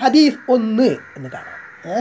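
A man's voice speaking in drawn-out, sing-song syllables, in short pitched phrases about half a second each.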